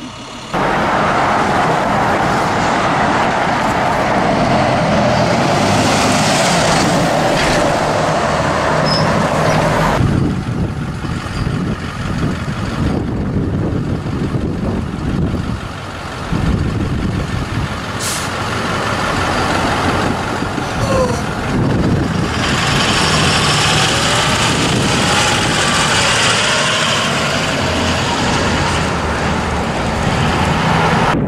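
Buses driving past and pulling away: the engines run with tyre noise, and there is a hiss of air brakes. The sound changes abruptly about ten seconds in.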